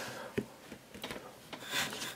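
Hands handling a giant plastic surprise egg: soft rubbing of hands on plastic, with a sharp click about half a second in and a few fainter ticks.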